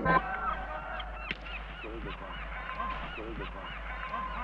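A flock of geese honking, many short calls overlapping, loudest just after the start, over a steady low hum.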